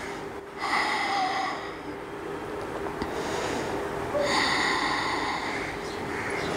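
A woman taking slow, deep, audible breaths while holding yoga boat pose (navasana). There are two long breaths, one starting about half a second in and the other about four seconds in.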